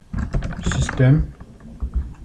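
Computer keyboard typing: a quick run of keystrokes, then a short voice sound about halfway through that is the loudest thing heard, then a few more keystrokes.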